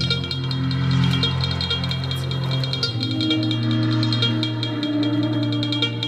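Dramatic background score: held low notes that shift about every three seconds under a quick, steady ticking pulse.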